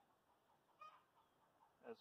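Near silence, broken a little under a second in by one faint, short cluck from a chicken.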